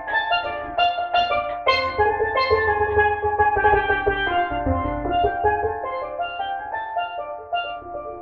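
A single steel pan struck with sticks, playing a reggae melody in quick runs of ringing notes. It grows softer and sparser toward the end as the tune winds down.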